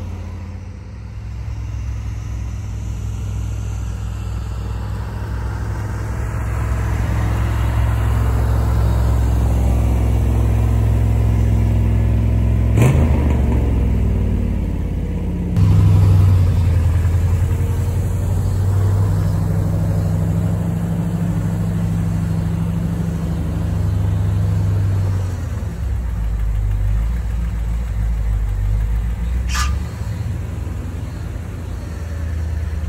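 C3 Corvette's V8 engine running, growing louder over the first dozen seconds, with a sharp click about halfway through and a brief rise in level just after.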